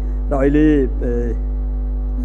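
A man's voice drawing out one long, chant-like syllable about half a second in, then falling quiet, over a steady low mains hum.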